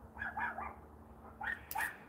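Faint short animal calls, high and pitched: a quick cluster about a quarter second in, then two more after about a second and a half.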